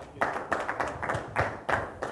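Audience applauding, the clapping starting a fraction of a second in.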